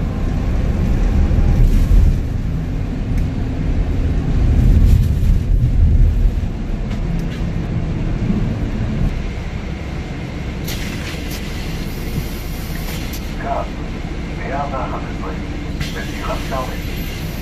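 Inside a city bus: a low engine and road rumble while the bus drives, easing off after about ten seconds as it slows to a stop. Near the two-thirds mark comes a couple of seconds of pneumatic air hiss, and passengers' voices are heard near the end.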